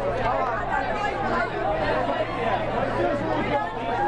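Crowd chatter: many voices talking over one another, with a steady low hum underneath.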